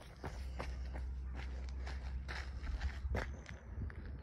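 Footsteps of a person walking on a road surface, about three steps a second, over a low steady rumble.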